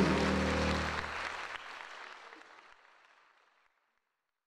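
Audience applauding at the end of a men's gospel quartet song, with the last keyboard chord dying away underneath. The applause fades out over about three seconds.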